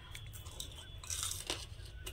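Crisp deep-fried bread-and-onion pakora being bitten and chewed: faint crunches, the clearest a little past a second in.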